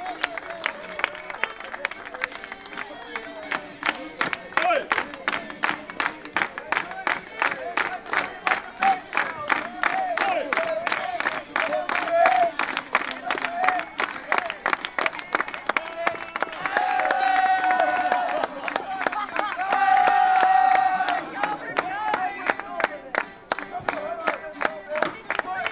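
A crowd clapping along on a fast, steady beat while voices sing and call out over it. A few longer held notes come in the second half.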